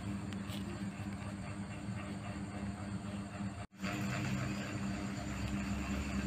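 A steady low electrical or fan-like hum with background hiss, briefly dropping out a little past halfway where the footage is cut.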